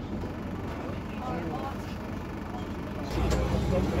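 A Bristol RELL6G bus's rear-mounted Gardner six-cylinder diesel heard from inside the saloon, a steady low rumble under passengers' chatter. About three seconds in the engine becomes clearly louder.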